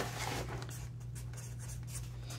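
Felt-tip Sharpie marker writing on paper in a series of faint short strokes, drawing a bracketed minus eighteen. A steady low hum lies underneath.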